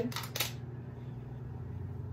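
A couple of brief rustles in the first half-second, then a steady low hum of room background.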